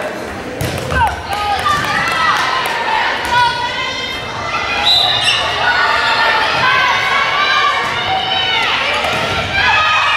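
Indoor volleyball rally on a hardwood gym court: the ball being struck and athletic shoes squeaking on the floor, mixed with players and spectators calling out, all echoing in the large hall.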